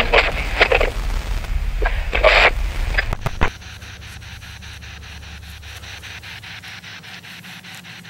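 A low hum with a few short noisy bursts stops about three and a half seconds in. It gives way to a handheld spirit box sweeping through radio stations: rapid, even clicks about five a second over faint static, with no voice coming through.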